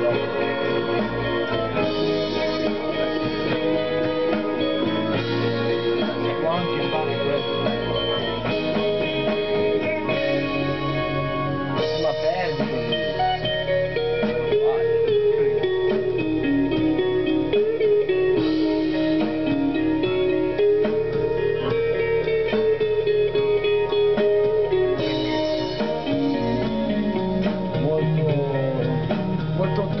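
Guitar-led psychedelic rock track being played back over studio monitors during a pre-mix check at the console. About twelve seconds in, a sustained, bending lead line comes in over the band.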